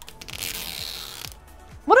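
Plastic shrink wrap being torn off a plastic toy capsule ball by its pull strip: a few small crackles, then a rustling rip lasting about a second.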